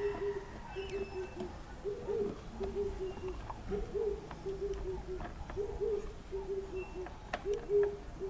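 A dove cooing in the background, one phrase about every two seconds: a rising first coo followed by a few shorter, lower coos. Light clicks and knocks of a screwdriver on a plastic gate-motor cover come through over it, the sharpest near the end.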